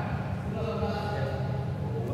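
Indistinct voices of people talking in a large hall, over a steady low hum.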